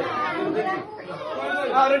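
Several people talking over one another in group chatter.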